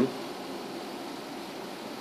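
Steady, even hiss of background room noise with no distinct sound events.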